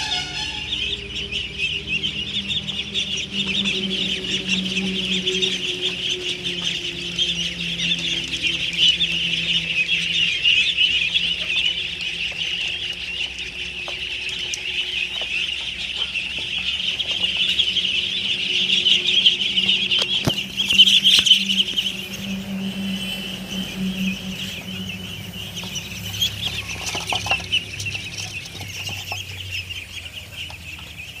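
A large flock of Khaki Campbell ducklings peeping together in a steady, high-pitched chorus, swelling a little louder about two-thirds of the way through.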